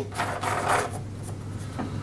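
Fuel filler cap being screwed back onto a petrol lawnmower's fuel tank: a rasping scrape, mostly in the first second, then quieter.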